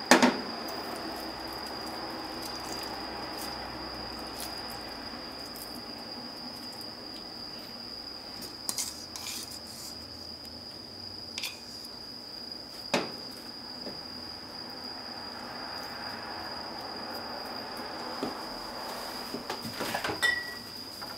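Kitchen handling sounds: a sharp knock right at the start, then a few scattered taps and clinks of a bowl and frying pan as sliced onion is laid on pizza dough, over a steady faint high-pitched whine.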